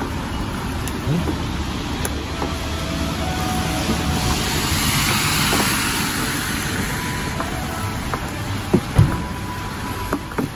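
A road vehicle passing close by, its noise swelling to a peak about halfway through and then fading. A couple of sharp knocks follow near the end.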